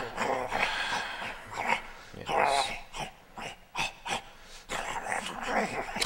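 A person imitating a dog at play with a tennis ball: a run of short, irregular dog-like growls and grunts.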